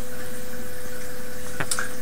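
Steady background hiss with a thin, faint hum running under it, and one short click near the end.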